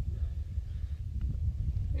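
Wind buffeting the phone's microphone outdoors, a steady low rumble with a faint tick about a second in.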